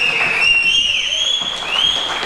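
Several people whistling loudly in celebration: two or three sustained whistles overlapping at slightly different pitches, each sliding a little up or down.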